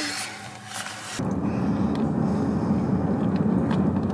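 Inside a moving car: the steady low rumble of engine and road noise, starting abruptly about a second in after a quieter stretch.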